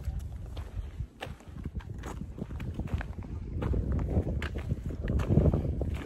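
Footsteps on a dirt trail with the light clicks of a trekking pole, over a low rumble of wind on the microphone that grows louder in the second half.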